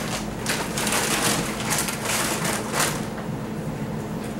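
A plastic bag crinkling and rustling in a series of crackly bursts as it is handled, dying away near the end, over a steady low hum.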